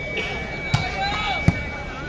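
A volleyball bounced twice on the court by a player getting ready to serve: two dull thuds about three-quarters of a second apart, over crowd voices.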